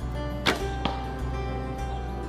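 Traditional bow shot: the string is released with a sharp thwack about half a second in, followed by a shorter, fainter knock about a third of a second later, over background music.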